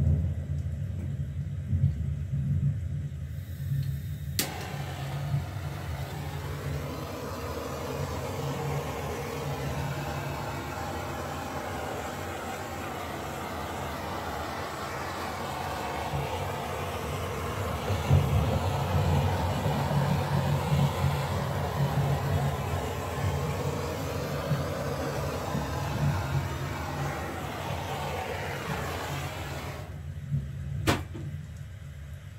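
A small handheld torch clicks alight about four seconds in and runs with a steady flame hiss as it is passed over wet acrylic pour paint, the usual way of popping air bubbles and drawing up cells. A steady low hum sits underneath throughout.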